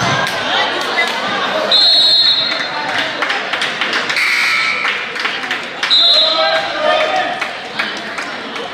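Basketball game play in a gym: the ball bouncing on the court with players and spectators calling out, echoing in the large hall. Two short, high squeaks come about two seconds in and again about six seconds in.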